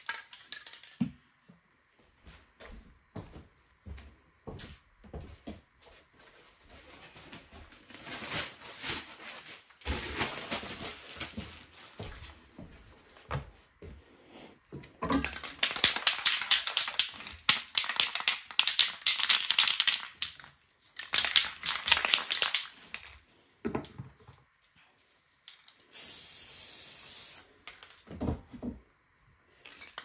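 Newspaper being crumpled and crinkled by hand, clicking and rustling at first and densest in a long stretch past the middle. Near the end comes a short, steady hiss of an aerosol spray-paint can.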